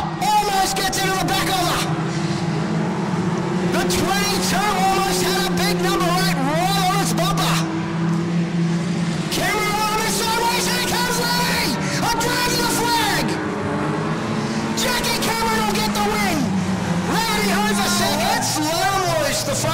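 Small-engined junior sedan race cars running laps of a dirt speedway oval, engine notes rising and falling as they come off and into the turns, with an indistinct voice over them.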